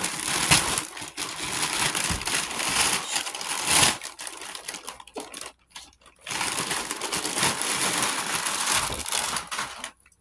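Thin plastic poly mailer bag crinkling and rustling as it is pulled open by hand, in two long spells with a short break about six seconds in.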